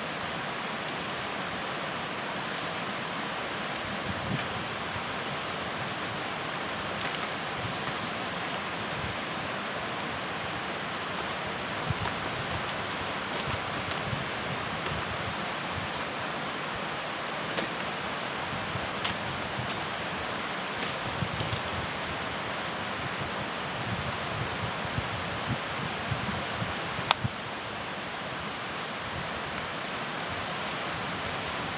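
Steady rushing background noise with scattered small cracks and scrapes as birch bark is peeled and worked with a knife on a fallen birch, and one sharper crack near the end.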